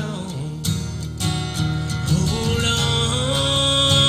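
Acoustic guitar strumming a steady accompaniment. About two seconds in, a long held melodic note joins over it.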